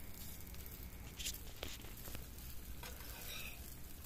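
Semolina pancakes frying in a little oil in a non-stick pan: a faint, steady sizzle, with two light clicks about a second and a half in.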